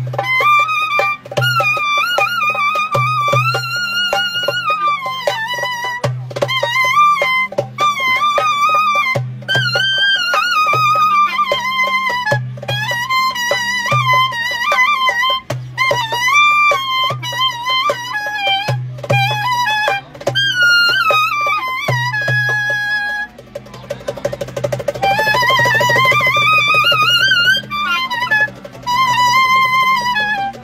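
Clarinet playing an ornamented Turkish folk melody full of bends and trills, with darbuka (goblet drum) strokes keeping a steady rhythm underneath. Near the end the clarinet makes a long rising slide.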